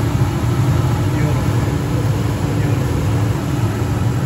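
Jandy LRZ325 gas pool heater firing, its burners running with a steady low rumble and a steady hum. The burners have just lit on hot-surface ignition now that the defective gas valve has been replaced.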